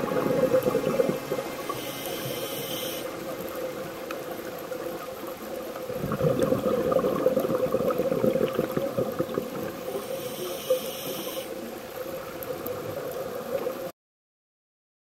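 Underwater sound of scuba regulator breathing: a hiss of inhalation about two seconds in and again near the end, and a louder bubbling exhale in the middle, over a steady hum. The sound cuts off just before the end.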